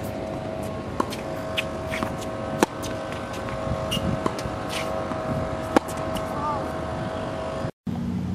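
Tennis ball struck by rackets during a rally: sharp pops about a second in and again near the middle, then a louder one near the end, over a steady background hum.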